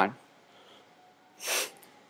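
A man's speech ends, then after a pause of over a second comes a single short breath drawn in through the nose before he speaks again.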